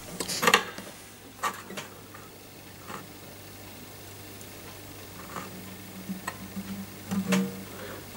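A steel string action ruler ticking and clicking lightly against the guitar's frets and strings as it is held to the neck: a handful of small, separate metallic ticks over a low steady hum.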